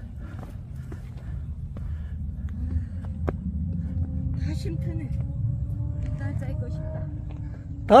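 Steady low rumble of wind on the microphone on an exposed mountain ridge, with a few faint clicks and faint distant voices.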